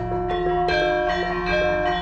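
Javanese gamelan music: bronze metallophones ring out a steady melody of held, ringing notes that step to a new pitch every few tenths of a second.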